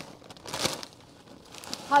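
Plastic snack bags crinkling as they are handled and lifted, with the loudest rustle about half a second in.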